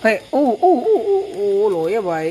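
A voice in drawn-out, wavering sing-song tones, with a long held note in the second half.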